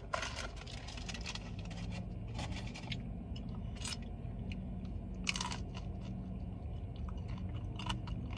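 Close-up chewing of a bite of fried fast-food taco, with irregular crisp crunches of the shell in small clusters between quieter mouth sounds.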